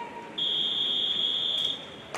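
Swim referee's long whistle, one steady high-pitched blast of about a second and a half: the signal for the swimmers to step up onto the starting blocks.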